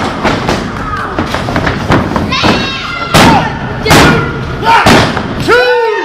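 Three loud thuds of wrestlers' impacts in the ring, each about a second apart, over spectators shouting, with a loud drawn-out yell near the end.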